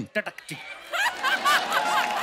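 Studio audience laughing at a joke, swelling about half a second in, with one woman's laugh standing out above the crowd.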